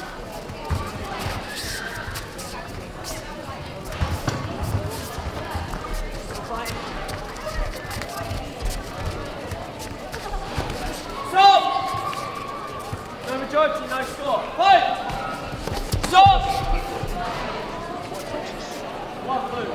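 Kickboxing point-fighting bout: short thuds and slaps of gloves and feet striking and landing on the mats, over hall chatter. Several loud shouts break out in the second half, about three seconds apart.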